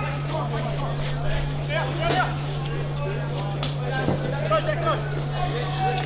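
Field hockey players' voices calling across the pitch over a steady low hum, with one sharp click about three and a half seconds in.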